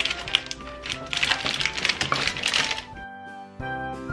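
Crinkling and clicking of plastic snack packets and cardboard boxes being handled and packed into a plastic basket, over light instrumental background music. The handling noise stops about three seconds in, leaving only the music.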